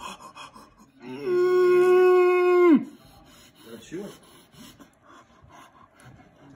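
A man's long held cry, steady in pitch for about a second and a half and then dropping off, followed about four seconds in by a couple of short vocal sounds: his reaction to the burn of a piece of habanero pepper on his tongue.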